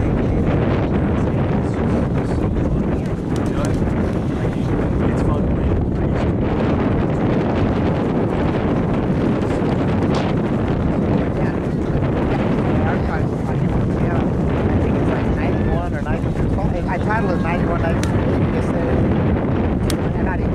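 Steady wind buffeting the microphone, a dense low rumble throughout, with faint voices in the background and one sharp click near the end.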